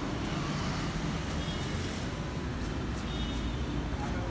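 Steady background traffic noise: a continuous low rumble of passing vehicles with no clear single event.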